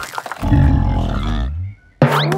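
A loud, low cartoon roar lasting about a second, dropping in pitch at the end before it cuts off.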